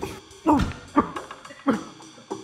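A man coughing and choking on cigarette smoke: three short, strained, voiced coughs, each falling in pitch, about half a second apart.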